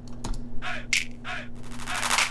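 Programmed clap samples playing back from an FL Studio beat: a few sharp claps, the loudest just before two seconds in, ringing out in a long hall-type reverb tail. A faint steady low hum sits under them.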